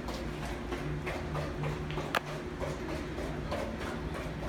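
Golden retriever moving about on a bare concrete floor, its nails ticking lightly about three times a second, with one sharper click about two seconds in.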